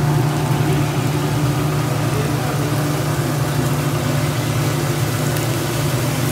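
A paratha frying in oil in a pan, giving a steady sizzle, over a steady low hum from the commercial gas range.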